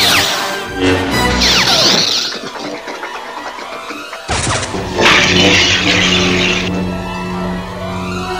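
Lightsaber sound effects over an orchestral film score: whooshing swings with falling pitch, and two crackling blade clashes, one about a second and a half in and a longer one about five seconds in, while the orchestra plays underneath.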